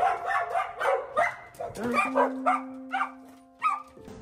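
A yellow Labrador retriever barking a string of short barks as the front door opens, greeting the arrival, with people's voices and a laugh alongside.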